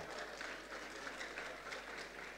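Audience applauding: a steady spatter of many hands clapping.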